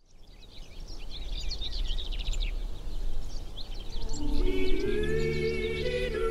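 Birds chirping over a low, steady outdoor rumble, fading in from silence. About four seconds in, music with long held chords begins and swells.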